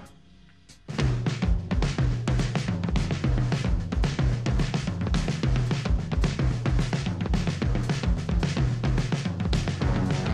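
Rock band music cuts out for about a second, then a drum kit comes back in with a steady driving beat, bass drum and snare to the fore, over low repeating notes.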